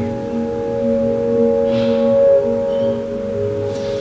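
Calm background music of sustained ringing tones, like a singing bowl, held steady under a guided yoga practice.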